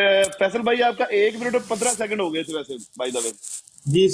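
A man's voice speaking through the live-stream call's narrow, phone-like audio, with brief hissy sounds.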